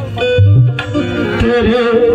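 Qawwali music: harmonium tones over hand-drum strokes, with the lead singer's voice coming in on a wavering held note about one and a half seconds in.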